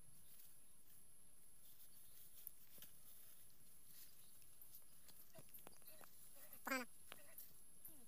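Quiet background with a steady, faint high buzz. About seven seconds in comes one short, loud call with a quavering pitch, like a bleat.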